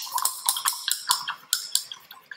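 A paintbrush rattled and tapped against the sides of a water cup while being rinsed: a quick run of sharp clinks, about four or five a second, thinning out near the end.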